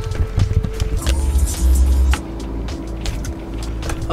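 Background music over a low rumble, with scattered clicks and knocks from someone getting into a car.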